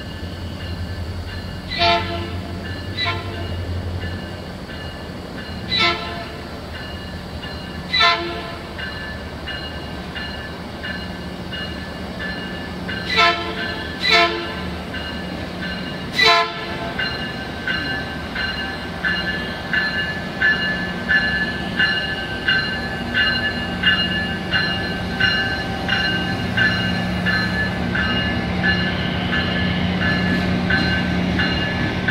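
Metrolink diesel train at low speed: a series of short horn toots through the first half, then the locomotive bell ringing evenly, under two strikes a second, over the steady hum of the MP36PH-3C's diesel engine.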